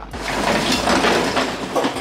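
Corrugated metal roll-up door of a storage unit being pushed up by hand, rattling continuously as its slats roll open.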